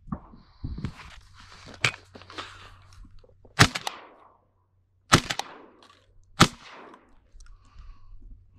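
Three shots from a Stoeger M3000 semi-automatic 12-gauge shotgun fired at a passing duck, the second and third each about a second and a half after the one before. Rustling and a lighter knock come before the first shot.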